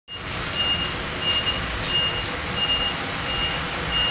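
Inside a bus in the rain: a steady rushing noise, with a vehicle's high electronic warning beeper sounding evenly about one and a half times a second.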